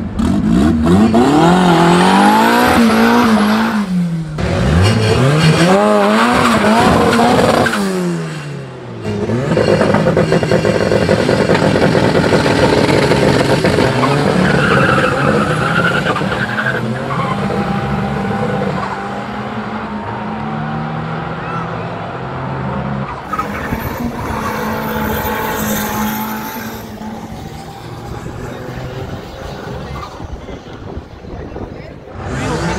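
Turbocharged Honda Civic's engine revved up and down several times at the drag-strip start line. Then two cars launch and accelerate hard down the strip, their engine sound falling away with distance in the second half.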